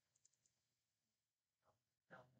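Near silence, with a few very faint clicks shortly after the start.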